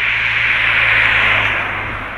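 A vehicle passing on the street: a hiss that swells to its loudest about a second in and then eases off, over a steady low hum.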